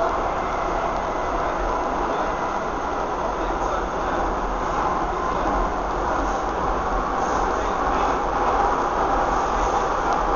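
Interior running noise of a Docklands Light Railway B07 Stock car in motion: a steady rumble and rush of wheels on rail, growing slightly louder toward the end.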